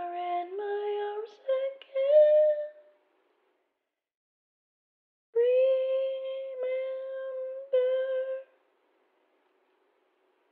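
A woman's voice singing a slow song softly, unaccompanied. A few phrases end about three seconds in, and after a pause come several long held notes.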